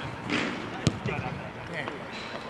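Distant, indistinct voices of players on an outdoor pitch, with one sharp knock a little under a second in.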